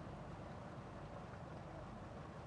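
Steady low rushing of water from small spouts pouring and splashing into a koi pond.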